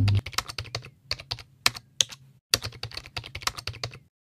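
Computer keyboard typing: a quick, irregular run of key clicks over a faint low hum, with a short break about halfway, cutting off suddenly at the end.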